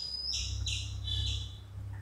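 Small birds calling: a thin high whistle followed by several short, high chirps, over a steady low hum.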